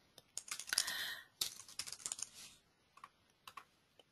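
Computer keyboard typing: a quick run of keystrokes for about two and a half seconds, then two or three single key presses.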